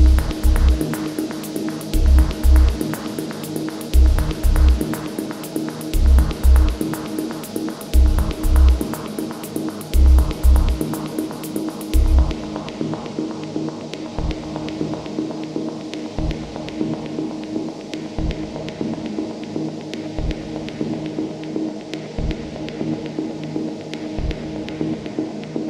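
Ambient techno track: a sustained drone under deep kick drums in a syncopated pattern and fast ticking hi-hats. About halfway through, the hi-hats and most of the kicks drop out, leaving the drone with sparse low pulses.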